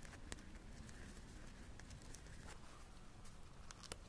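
Near silence with a faint low room hum and a few small, scattered soft clicks as a satin cord is drawn through a pinned weave with tweezers.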